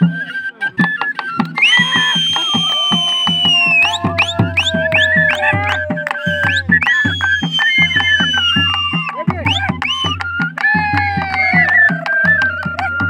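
Live folk music: a dholki, a two-headed barrel drum, is beaten by hand in a steady driving rhythm, and about one and a half seconds in a flute joins, playing a high melody with held notes and quick slides.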